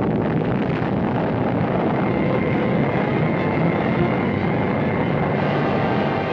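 Steady, loud rumbling roar of an atomic bomb explosion from an archival newsreel soundtrack, with no single bang standing out.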